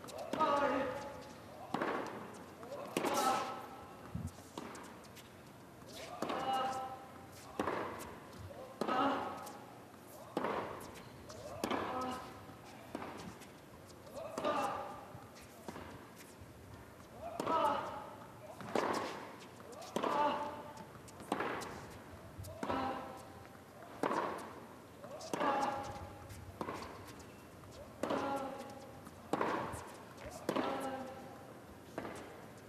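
A long tennis rally on an indoor hard court: the ball is struck back and forth at a steady pace, a sharp pop about every second. Many strokes come with a player's short grunt.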